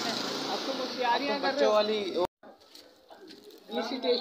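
Indistinct talking voices that cut off suddenly a little over halfway through. A faint hush follows, and voices start again near the end.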